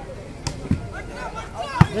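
A volleyball being struck by hand during a rally: a few sharp smacks, the loudest near the end, over faint crowd voices.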